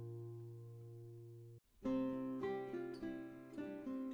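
Background music on acoustic guitar. A held chord fades and cuts off about a second and a half in, and after a brief gap new plucked notes begin.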